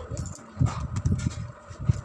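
Cardboard fireworks boxes being handled: irregular low, muffled knocks and rubs as a box is lifted from the pile and turned over, over a faint steady hum.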